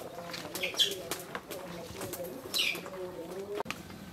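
Birds calling: a low, wavering call runs steadily underneath, with two short high chirps falling in pitch about one and two and a half seconds in. A sharp click near the end, after which the sound changes.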